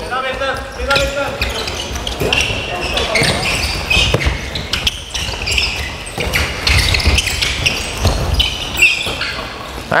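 Handball drill in play on a wooden indoor court: the ball bouncing, many short shoe squeaks on the floor, and players' voices calling out.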